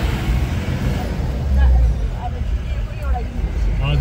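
A vehicle's engine and road rumble heard from inside the cabin while driving, a steady low drone, with quiet voices talking in the background.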